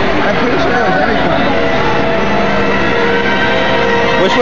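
People talking close by over a background crowd murmur, with instrumental music of steady, held notes underneath.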